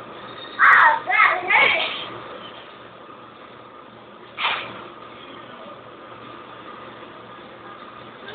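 A young child's voice making a few short, wordless sounds about a second in, then one more short sound near the middle.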